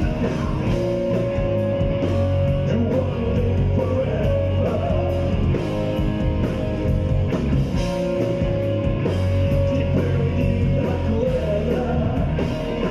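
Live rock band playing loud and steady, with electric guitars over bass and a driving drum beat, heard from within the audience.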